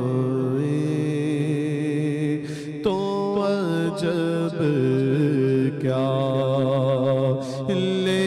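A man singing a naat into a microphone in long, drawn-out melismatic phrases over a steady low drone. There is a brief pause for breath about three seconds in, after which the line starts again.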